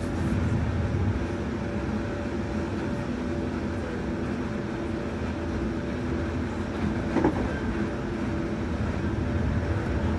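Passenger train running, heard from inside the carriage: a steady low rumble with an even hum over it, and a brief knock about seven seconds in.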